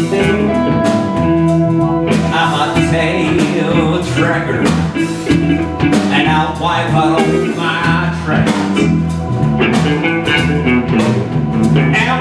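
Live blues band playing electric guitars, bass and drums in a steady groove. From about two and a half seconds in, a lead line bends up and down in pitch over it.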